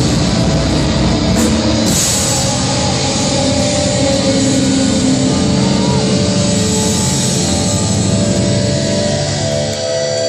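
Black metal band playing live: dense distorted guitars and drums at full volume. Near the end the low end drops away, leaving held, ringing guitar notes.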